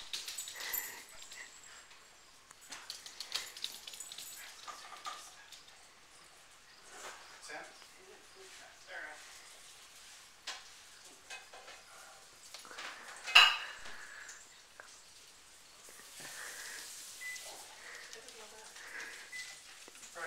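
Kitchen clatter of dishes and cutlery with faint voices in the background, and one sharp clack about two-thirds of the way through, the loudest sound.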